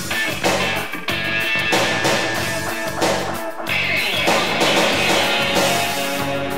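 New wave rock band recording in an instrumental stretch, with guitar over a steady drum beat and no vocals.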